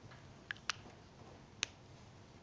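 Three short sharp clicks, two close together about half a second in and a third a second later, over faint room tone.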